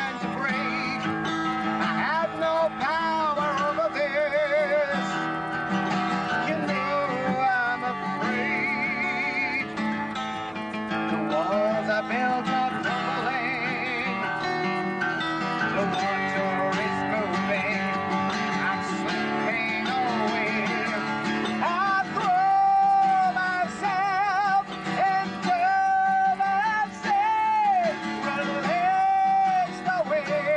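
Acoustic guitar played live with a man singing over it, holding long notes with vibrato, most clearly in the second half.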